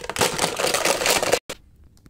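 Plastic crinkling and rattling as a clear plastic toy box and its contents are handled, a dense crackly rustle that cuts off abruptly about a second and a half in, followed by a single light click.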